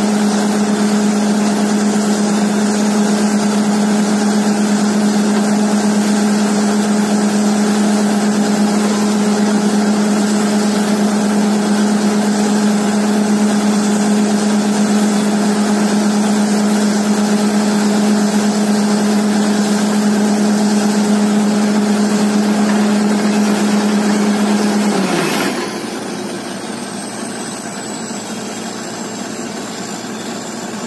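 Truck-mounted borewell drilling rig running: a steady, loud engine drone over the rush of compressed air blowing cuttings up out of the bore. About 25 seconds in, the drone falls away and a high whine glides down, leaving a lighter hiss of air.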